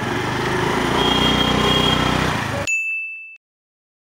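Honda Activa scooter's small engine idling with street noise. About two and a half seconds in, a single bright ding rings briefly, then the sound stops abruptly.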